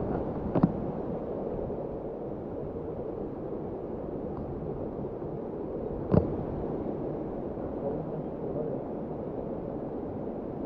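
Steady rush of flowing water, with two sharp knocks: a small one about half a second in and a louder one about six seconds in.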